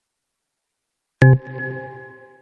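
An electronic notification chime about a second in: one bell-like tone made of several pitches, struck sharply and fading over about a second and a half, signalling that a poll has popped up in the online class software.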